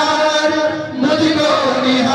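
Male voices chanting Sanskrit Vedic mantras for a Rudrabhishek, the ritual worship of Shiva, picked up through handheld microphones. The chanting breaks briefly for breath just before a second in, then carries on.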